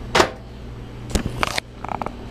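A few sharp knocks and rustles of handling noise as a handheld camera is moved and swung downward, over a low steady hum.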